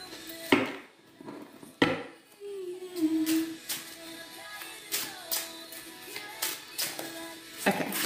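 A deck of foil-finished tarot cards being shuffled by hand, making a run of short clicks and slaps. Behind it a low musical note is held for several seconds, sliding down slightly as it starts.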